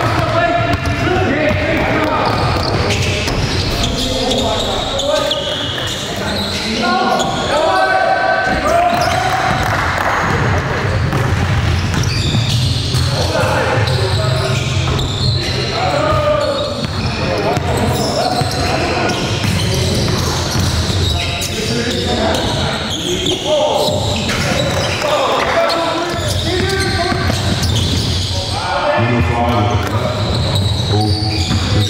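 Basketball bouncing on a gym floor during play, with players' indistinct voices and calls ringing in a large hall.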